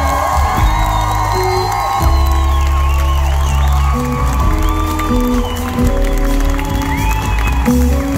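Live soul band playing through the PA: electric bass, drums and guitars, with a strong, steady bass line and sustained notes.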